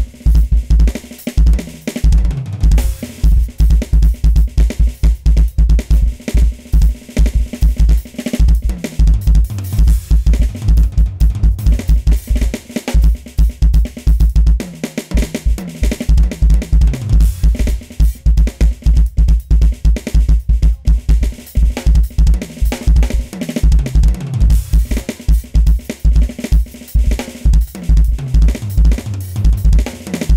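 Roland V-Drums TD-30KV electronic drum kit played in a fast solo: rapid bass drum strokes under snare and tom fills and cymbal crashes, with a brief break about halfway.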